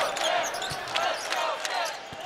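A basketball dribbled on a hardwood court, a few separate bounces, over steady arena crowd noise.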